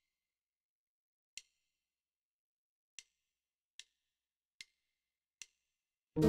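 Five faint, sharp count-in clicks at about 74 beats a minute: two slow ones, then three more twice as fast, one on every beat, leading into the backing track.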